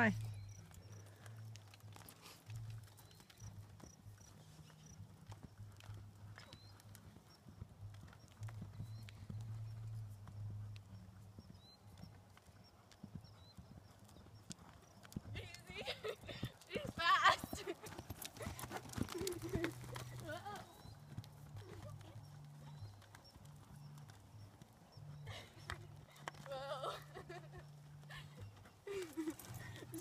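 Hoofbeats of a ridden American Quarter Horse mare moving at speed over the soft dirt of a riding arena, with voices calling out now and then.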